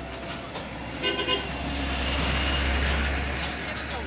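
A motor vehicle passing close by on a street: its engine rumble and road noise swell to a peak between two and three seconds in and then fade. A short horn toot sounds about a second in.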